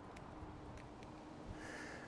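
Faint, steady whine from the Hovsco Porto Max electric scooter's motor while riding, over a low rumble of wind and road muffled by a windscreen on the microphone.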